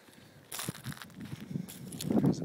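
Irregular crunching and crackling of footsteps on dry ground and brush, with a sharper rustle about half a second in.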